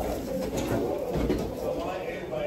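Indistinct background voices, with no clear words, over the murmur of a room.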